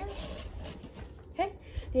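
Soft rustling and handling noise, with a low rumble and a few light knocks, as a three-ring binder is slid into a backpack.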